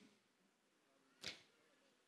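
Near silence: faint room tone, broken once by a single brief, faint noise a little past a second in.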